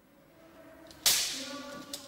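An edited whoosh sound effect: a sudden sharp hiss about a second in that fades over about a second, over a few faint held tones.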